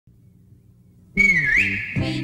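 Faint low hum for about the first second, then a whistle sounds: it dips, glides up and holds, with lower notes sliding downward beneath it, as the opening of a jingle.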